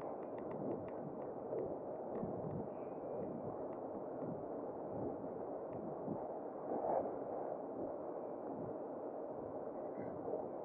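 Steady rush of wind on the microphone mixed with tyre noise on tarmac from a bicycle riding at speed along a road. There is a short run of light ticks in the first second and a brief louder gust about two-thirds of the way through.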